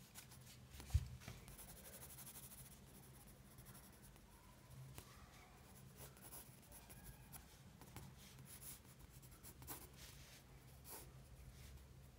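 Pencil scratching across sketchbook paper in quick, light sketching strokes, faint throughout. A soft knock sounds about a second in.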